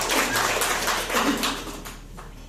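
Audience applauding: a dense patter of many hands clapping that dies away near the end.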